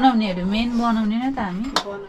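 A person's voice held in one long wordless sound that wavers in pitch. A single light metallic clink comes near the end, from the steel bowls used for mixing momo filling.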